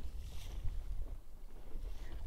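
Wind rumbling on the microphone over the wash of choppy sea around a rigid inflatable boat, a steady low noise with no distinct strokes.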